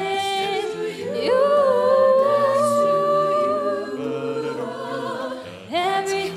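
A cappella vocal group singing: a female soloist holds one long note from about a second in for roughly three seconds, over sustained backing harmonies and a low bass vocal line.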